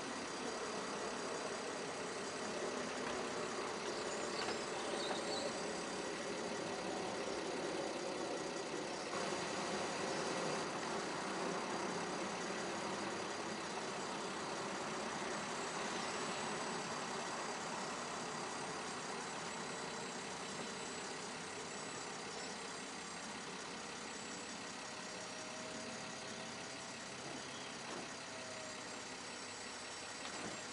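BMW 325i coupe-convertible's straight-six idling while its folding hard top retracts, the roof mechanism running steadily over the engine. The sound eases off slightly toward the end as the roof stows.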